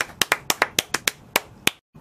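Two people clapping their hands: a short round of quick, irregular claps that stops shortly before the end.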